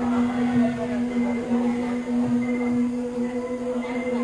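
A woman's voice in Maranao singing, holding one long, steady note.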